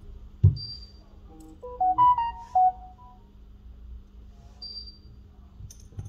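A short electronic jingle of several quick beeping notes stepping up and down in pitch, of the kind a phone or device plays as a notification tone. A sharp knock comes about half a second in. A steady low hum runs underneath.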